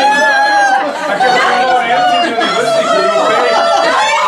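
Several actors' voices wailing and crying out in staged lament, with long, high, drawn-out cries overlapping one another.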